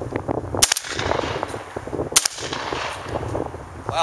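Two shotgun blasts about a second and a half apart: a Savage 745 semi-automatic 12-gauge shotgun firing 12-pellet 00 buckshot loads, which are stout and hotter than slugs.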